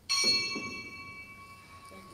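A bell struck once, loudest at the strike, its several high ringing tones fading within about a second while one lower tone rings on steadily.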